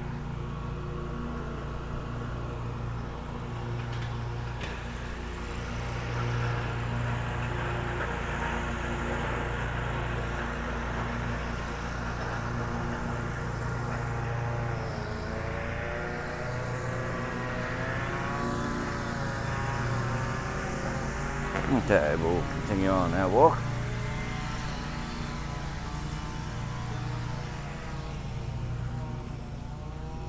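Steady drone of council works machinery running, its engine note wavering in pitch for a few seconds around the middle. A brief, louder burst of sharply rising and falling calls comes about two-thirds of the way through.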